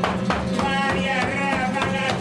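Flamenco-style music: a wavering singing voice over instrumental accompaniment with sharp rhythmic strokes.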